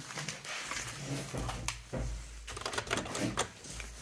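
Keys of an old mechanical computer keyboard being pressed: a run of irregular clicks, thickest in the second half.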